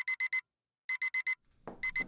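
Digital alarm clock beeping: quick bursts of four high beeps, one burst about every second, three bursts in all.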